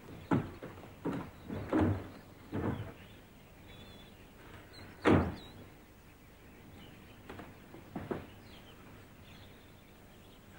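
Casement windows being unlatched and pushed open: a string of short wooden knocks and thumps, about seven in all, the loudest about five seconds in.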